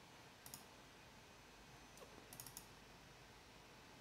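Near silence with a few faint computer mouse clicks: one about half a second in and a short cluster around two seconds in.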